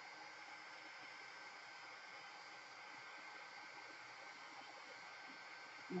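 Craft heat gun blowing steadily, heard faintly as an even hiss with a thin whine, drying a coat of Mod Podge.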